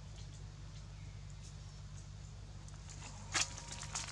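Quiet outdoor background with a steady low hum and faint scattered ticks, and one short, louder noise a little before the end.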